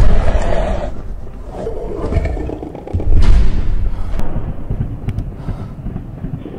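A creature's roar, loud with a deep rumble, heard twice: once at the start and again about three seconds in.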